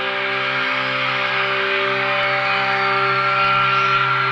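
A live rock band's closing chord held and ringing out on electric guitars, growing slightly louder, over the screaming of a large crowd.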